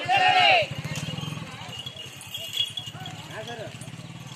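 A loud, high-pitched shout from protesters in the first half second, with fainter shouts later, over the steady fast low putter of a motorcycle engine running.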